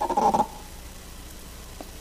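A man clears his throat into his hand near the microphone, one short burst of about half a second at the start, followed by steady low room hum.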